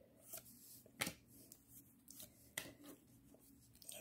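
Faint flicks and slides of baseball trading cards being moved one at a time from the front to the back of a hand-held stack: a few soft, separate taps, the clearest about a second in.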